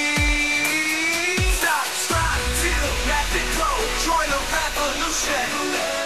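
AI-generated electronic rock/EDM song from Suno playing: deep drum hits under a held note that glides slightly upward, then about two seconds in a deep sustained bass comes in under a busier melody.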